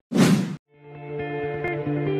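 A short whoosh sound effect, then soft ambient music fading in about half a second later.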